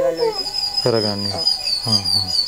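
A man's voice in two short utterances over a high, thin warbling tone that begins just after the start and carries on steadily.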